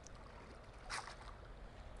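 Faint water sloshing and dripping as a mesh oyster bag is lifted out of shallow water, with a brief louder burst about a second in.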